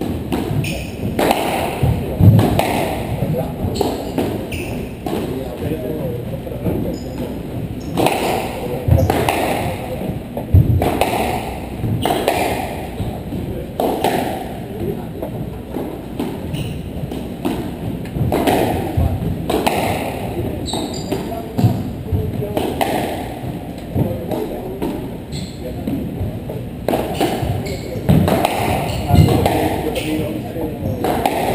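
A squash rally: the ball is struck by rackets and hits the court walls as irregular sharp knocks every second or two. Heavier thuds, likely players' footfalls, come in between, over a steady background murmur in a large hall.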